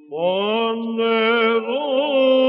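Male cantor chanting Byzantine chant in plagal fourth mode. A new phrase enters just after the start with an upward slide into a long held note, then gently wavers in ornaments.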